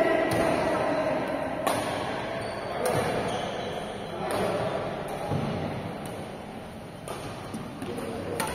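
Badminton rackets striking a shuttlecock in a doubles rally: a string of sharp hits, roughly one every second or so.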